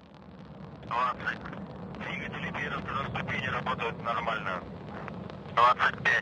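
Steady low rumble of a Soyuz rocket's first-stage and strap-on booster engines climbing after liftoff, building over the first second. A voice talks over it in short stretches.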